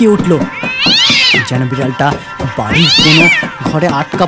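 A cat yowling twice, each call about a second long and rising then falling in pitch, over background music.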